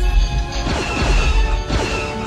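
A heavy crash sound effect that sets off a deep rumble lasting about two and a half seconds, with a few falling tones sliding down in the middle, under orchestral film score.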